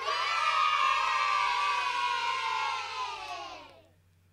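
A crowd cheering, a short burst of many voices that starts at once, holds for about three seconds and then fades out.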